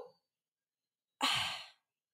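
A woman's short, breathy sigh about a second in, after near silence.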